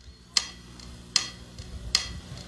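Three sharp clicks, evenly spaced a little under a second apart, each with a short ringing tail: a tempo count-in before the song.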